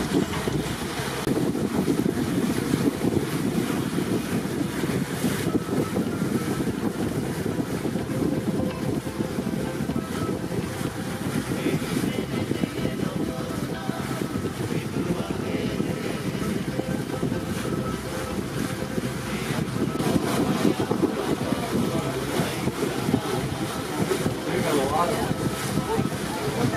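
Steady wind rushing over the microphone aboard an open-sided boat under way across open water, with the low rumble of the boat's passage.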